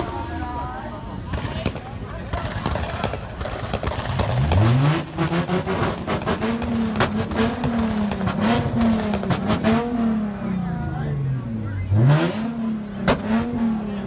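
Car engine revved and held on a two-step launch limiter, its pitch climbing and then bouncing up and down over and over, with sharp exhaust pops and bangs cracking through. Crowd voices are heard underneath.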